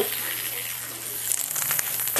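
Several small battery-powered vibrating toy bugs buzzing and rattling on a tile floor, with a flurry of quick clicks near the end.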